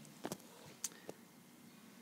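Four faint, short clicks spread over about a second, with quiet room tone between.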